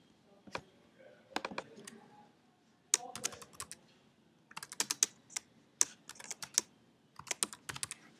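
Computer keyboard keystrokes as a page name is typed, in short irregular bursts of clicks with pauses between them.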